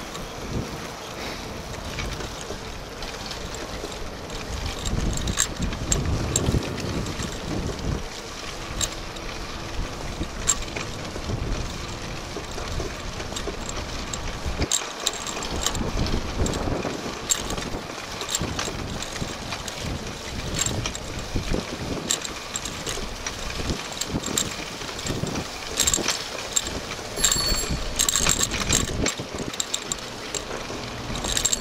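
Wind buffeting the microphone on a moving bicycle, in uneven gusts, over tyre noise on the pavement and scattered clicks and rattles from the bike.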